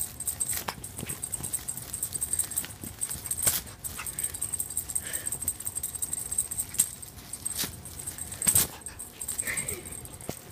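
Cat panting in quick, shallow breaths, with a couple of brief high-pitched squeaks and a few sharp clicks.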